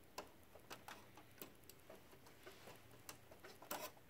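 Faint, scattered clicks and taps of a laser printer's plastic side panel and top cover being handled and fitted back onto its frame. A quick cluster of clicks near the end is the loudest.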